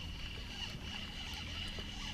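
Steady low rumble with a faint high whine from a fishing boat's motor, with a few faint ticks as a spinning reel is cranked to bring in a small bass.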